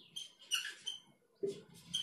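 Dry-erase marker squeaking on a whiteboard in a series of short strokes as letters are written.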